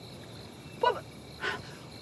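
Two short animal calls, about two-thirds of a second apart, over a steady low background hiss.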